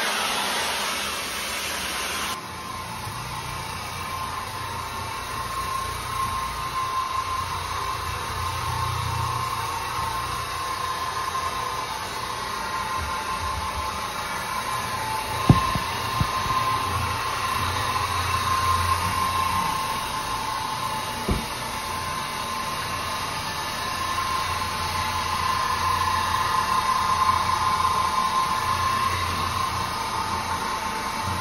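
Tile-and-grout spinner tool running over a wet tile floor: a steady whir and hiss of its spray jets and vacuum recovery. Two brief knocks come around the middle.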